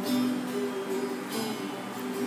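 Cutaway acoustic guitar strummed, chords ringing on, with a fresh strum about a second and a half in.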